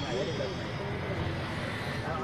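Young men's voices calling and chattering inside a crowded bus, over the steady low rumble of the moving bus.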